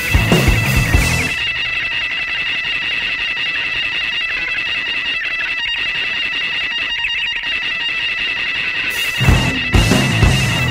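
Noise rock recording: the full band stops about a second in, leaving a steady high-pitched ringing tone like guitar feedback over faint noise, and the band comes back in near the end.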